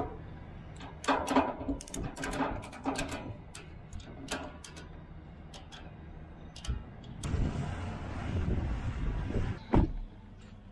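Ratchet strap being cranked tight over a load of steel pipe: a run of sharp ratchet clicks, two or three a second, for a few seconds. Near the end a steady rushing noise takes over.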